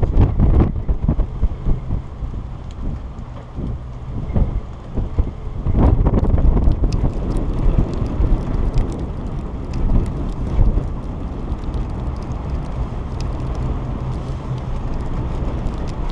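Wind buffeting the microphone on an open chairlift in blowing snow: a gusty low rumble, strongest at the start and again about six seconds in, then steadier, with faint scattered ticks.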